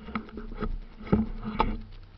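A handful of sharp knocks and scrapes on the camera as it is bumped and shifts. The loudest comes a little after a second in, with another at about one and a half seconds.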